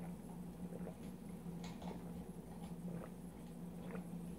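A person gulping down beer from a glass: a few soft, irregular swallowing clicks over a steady low hum.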